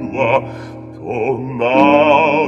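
Operatic bass voice singing with a wide vibrato over piano accompaniment; a loud sustained note swells in near the end.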